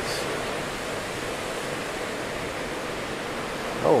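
Strong, gusty tropical-storm wind rushing through trees, a steady even rushing noise with no distinct events.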